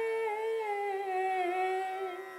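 A woman's voice holding one long sung note, steady at first and then wavering and sliding downward in pitch.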